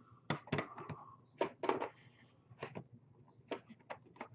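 Hard plastic graded-card slabs clacking and knocking against each other and the desk as they are sorted into piles: about seven short, sharp knocks at uneven intervals.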